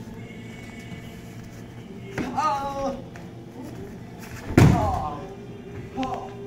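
A short yell about two seconds in, then a sharp, loud thud of a body thrown down onto a foam mat, followed at once by another short yell as the punch defence ends in a takedown.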